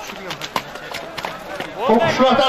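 A few irregular knocks of a horse's hooves close by on hard, frozen ground, with a man's voice starting to call out near the end.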